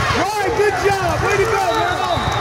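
Many high voices calling out and cheering over one another, with no single clear speaker, over a steady low hum from the hall.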